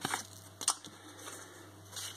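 Scratchcards being handled and moved on a table: two brief card-handling noises about half a second apart, over a faint steady hum.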